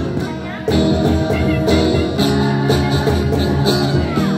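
A choir of students singing together to acoustic guitar accompaniment, with a steady percussion beat. The music drops briefly near the start, then comes back in full.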